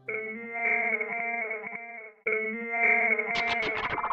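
Soundtrack music: a sustained lead instrument playing held notes that step from pitch to pitch. It cuts out briefly a little past halfway, and light ticks join near the end.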